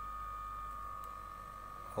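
Lifelong 25-watt handheld electric body massager running, its motor giving a steady, even whine with a low hum underneath.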